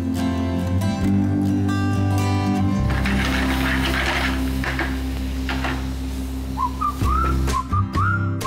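Background music over a steady bass, joined near the end by a whistled melody of short, gliding notes.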